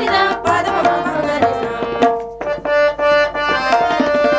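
Women's group singing a Kannada devotional vachana song, accompanied by a harmonium and tabla drum strokes. A little past halfway the music dips briefly, then carries on with steadier held notes.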